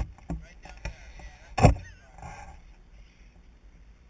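A few sharp knocks, the loudest a heavier thump about a second and a half in, with faint voices in the background.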